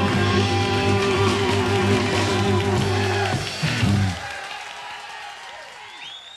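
Electric blues band with electric guitar playing the final bars of a song live, with steady held notes. The band stops about four seconds in and the sound rings away.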